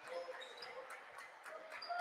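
Faint gymnasium game sound: a basketball dribbling on the hardwood court, with distant voices from the crowd and players and a few short high squeaks.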